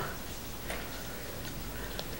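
Two pens writing and drawing on small cards: faint scratching with a few light ticks.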